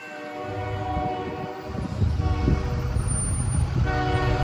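School bus diesel engine running close by as the bus pulls up, the low rumble and engine tone coming in about half a second in and growing louder, loudest in the second half.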